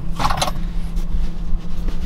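Steady low hum of a car running, heard inside the cabin, with a short burst of rustling about a quarter second in and softer rustling and fumbling after it as something is reached for on the back seat.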